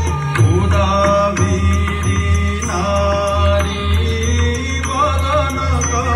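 Odissi Mangalacharan music: a voice chanting a devotional invocation to the goddess in a wavering melody over a steady low drone, with regular percussion strokes.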